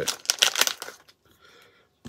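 Small clear plastic parts bag crinkling and rustling as it is handled and opened, dying away about a second in.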